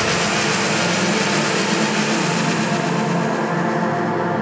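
Electronic music from a dubstep track: a steady, dense droning synth texture with no bass or drum beat.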